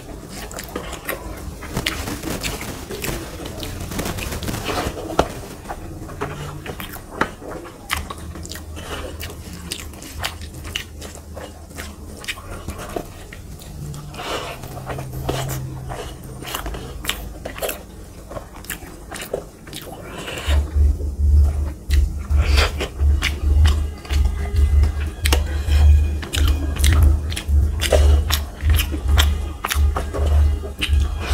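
Close-miked eating sounds of rice and fish curry eaten by hand: wet chewing, lip smacks and small mouth clicks, with fingers squishing rice on a brass plate. From about two-thirds of the way through, a louder low thumping repeats roughly twice a second in time with the chewing.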